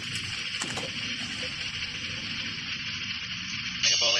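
Air-mix lottery ball-drawing machine running during the mega ball draw: a steady rushing hiss of the blower, with a couple of faint ticks just under a second in.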